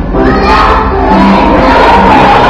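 A group of kindergarten children singing loudly, close to shouting, over held notes of instrumental accompaniment.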